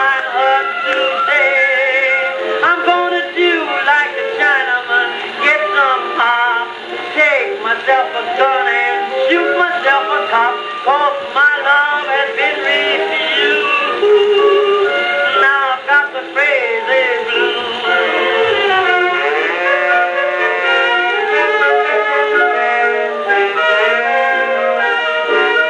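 Edison Diamond Disc phonograph playing a 1921 acoustic jazz-blues band recording. The band music sounds narrow and thin, with no deep bass and little treble.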